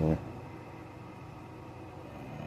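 A man's voice says "sorry" right at the start, then only a faint, steady background hiss with no distinct sounds.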